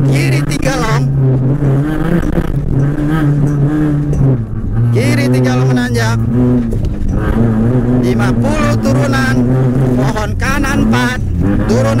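Rally car engine running hard at speed, heard from inside the cabin. The engine note dips briefly about four seconds in, then holds at a lower pitch.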